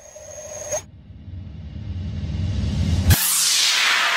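Electronic sound-design effects: the music stops under a second in, then a low rumble swells for about two seconds. It cuts off suddenly into a bright, hissing whoosh that sweeps downward and slowly fades.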